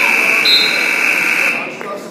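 Gym scoreboard buzzer sounding one long, steady blare that cuts off sharply about one and a half seconds in, marking the end of a wrestling period. Spectators' voices carry on underneath.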